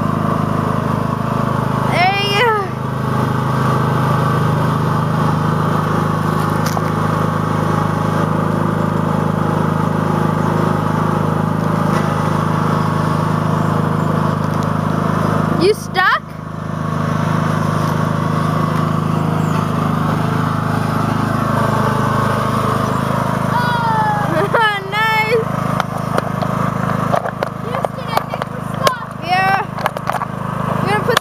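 Unmodified riding lawn tractor with a hydrostatic transmission, its engine running steadily under load as it drives through deep mud ruts. The engine note dips briefly about halfway through.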